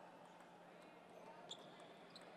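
A few faint, sharp clicks of a table tennis ball on paddles and table during a serve and rally, the sharpest about a second and a half in, over the low murmur of voices in a large hall.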